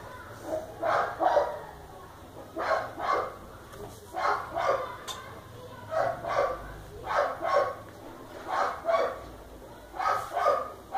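A dog barking over and over, two barks at a time, about every second and a half.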